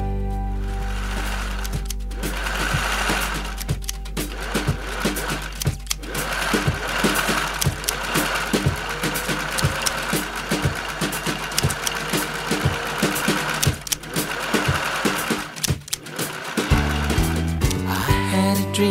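Sewing-machine sound over backing music: rapid, even needle ticking that stops and starts every couple of seconds.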